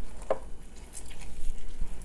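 A sharp knock on the wooden cutting board at the start, then faint wet handling sounds as a halved orange is squeezed by hand in plastic gloves to press out its juice.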